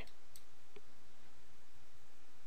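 Two faint computer mouse clicks over a steady low hiss.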